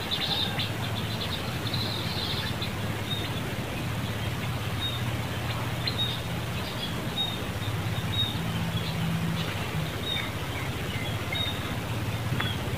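Small birds chirping: a quick run of high chirps in the first couple of seconds, then scattered short chirps, over a low steady hum.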